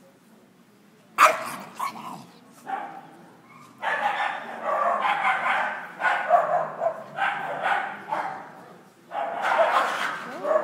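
A Scottish terrier barking: one sharp, loud bark about a second in, a few more, then a long string of barks from about four seconds in.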